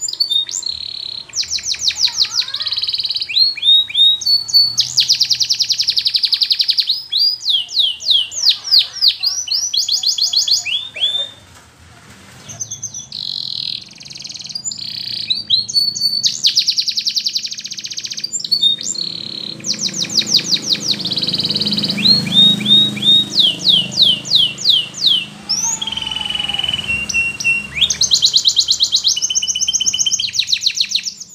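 Domestic canary singing: a long song of fast trills and rolls of repeated sweeping notes that change speed from phrase to phrase, with a brief pause about twelve seconds in.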